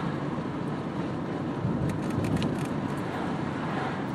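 Steady road and engine noise inside a moving car's cabin, a low rumble with a few faint clicks.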